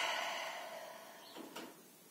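Quiet room, with one brief, soft breath drawn about one and a half seconds in.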